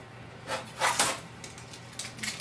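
Protective tape being peeled off a laser printer's plastic casing, heard as three short tearing bursts between about half a second and one second in.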